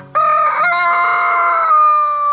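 Rooster crowing: a short opening note, then one long, loud held crow that steps up slightly in pitch about half a second in.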